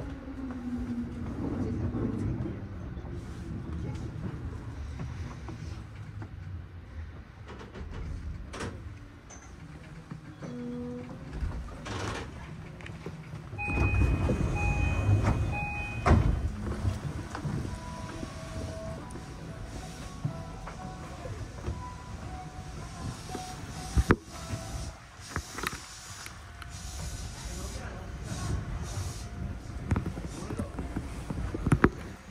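E233-series electric train's motor whine falling in pitch as it brakes to a stop, heard from the driver's cab. It then stands at the platform. About 14 s in, a louder stretch comes with a repeating electronic beep, and a sharp knock sounds near the end.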